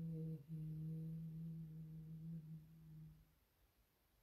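A voice holding one long, steady chanted tone, the drawn-out vibration of the Hebrew god name Eheieh. It breaks off briefly about half a second in, then carries on and fades out a little after three seconds.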